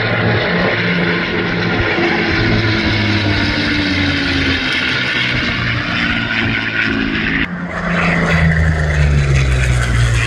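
Warbird piston engines droning as two P-51 Mustangs fly past in formation, a propeller-plane drone with its pitch sinking slowly. About three-quarters of the way through, the sound cuts abruptly to a louder single P-40 Warhawk engine, its pitch falling as it passes.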